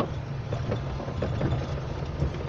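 Vehicle engine running at low speed, heard from inside the cab, with a few light knocks and rattles as it rolls over a rough dirt road.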